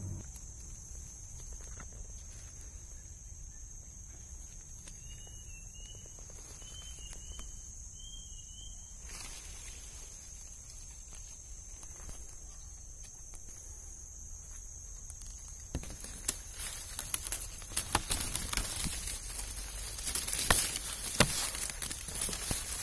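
Steady high-pitched drone of forest insects, with three short high chirps about a third of the way in. From about three-quarters of the way through, a louder crackling rustle of dry leaves and twigs as someone pushes on foot through the undergrowth.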